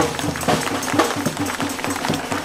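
A quick, steady drum beat with voices over it, the rhythm of a street-protest chant.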